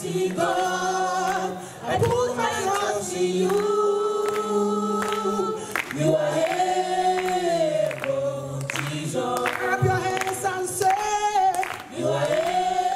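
Gospel singers, women's voices leading a small choir, singing a Christian spiritual song in Nigerian style, in long held phrases with short breaks.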